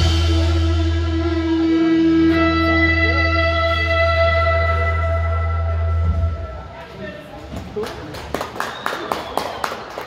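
Live country band's closing chord ringing out, with electric guitars and a low bass note held, cut off about six and a half seconds in. A few scattered claps follow.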